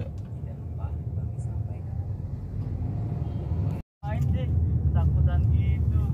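Steady low rumble of a car's engine and tyres heard inside its cabin while driving. The sound cuts out for a moment just before the fourth second, then returns louder, with a few short bits of a voice.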